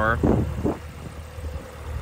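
2024 Cadillac CT5-V Blackwing's hand-built 6.2-litre supercharged V8 idling with a steady low hum.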